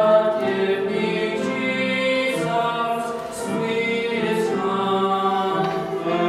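A girl and a boy singing a hymn together as a duet, in long held notes, with a short break between phrases about three seconds in.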